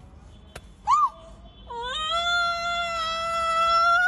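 A woman's voice gives a short rising-and-falling yelp about a second in. From a little before the middle it turns into a long, high, steady wailing cry.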